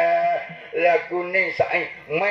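A shadow puppeteer's voice in drawn-out, sing-song tones: three held, slightly wavering phrases with short breaks between them.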